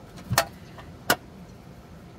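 Hinged metal bookmark tin being handled and shut: two sharp metallic clicks, the second about two-thirds of a second after the first.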